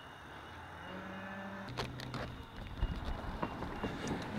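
Cattle mooing faintly: one call of about a second that drops lower in pitch, followed by a few light knocks and rustles of a handheld camera being turned.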